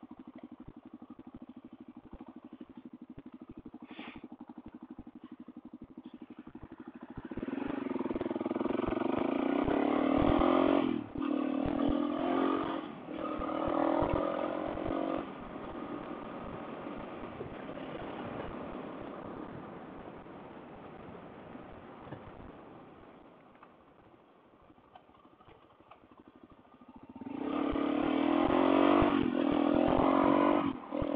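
Suzuki DR-Z400 single-cylinder four-stroke engine heard from the bike's camera. It pulses along at low revs, then revs up hard in three pulls with short breaks at the gear changes, settles to a steady cruise, and drops almost to nothing as the throttle is rolled off. It revs up again near the end.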